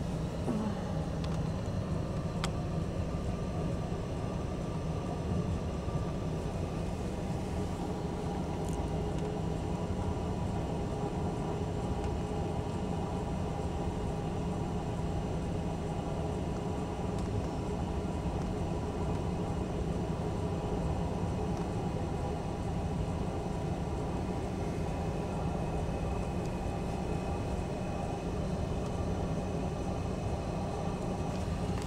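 Steady road and engine noise of a moving car, heard from inside the cabin: an even, unbroken rumble.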